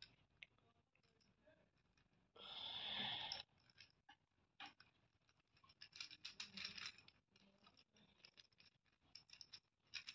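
Plastic gear cube puzzle being twisted by hand: faint irregular clicking and rattling of its geared pieces in short bursts. A brief rushing noise lasting about a second comes about two and a half seconds in.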